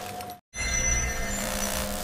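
The tail of shattered glass shards settling on a steel plate, cut off abruptly about half a second in. After a moment of silence, a steady low rumble with several high held tones starts.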